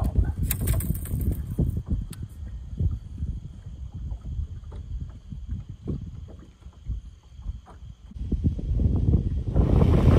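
Wind buffeting the microphone on an open boat, a low rumble with scattered small clicks and knocks and a brief crackle about half a second in. It drops off for a second or two past the middle and builds again near the end.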